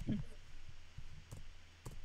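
Computer keyboard keys clicking: a handful of separate, unevenly spaced keystrokes as a period is typed and a new line started.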